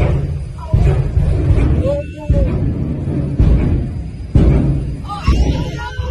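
Top fuel dragster engines at full throttle during burnouts: a loud, deep roar that comes in repeated surges, each starting abruptly, about once a second. Heard from a window overlooking the strip.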